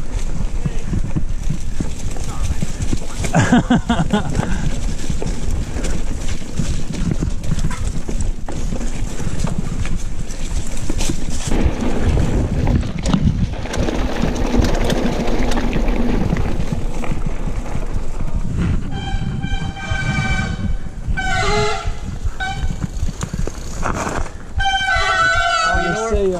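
Mountain bike ridden fast over a wet, muddy dirt trail: a steady rumble of tyres with constant rattling and clicking from the bike. Toward the end the disc brakes squeal several times as the bike slows, which the riders suspect is from mineral oil on the brake pads.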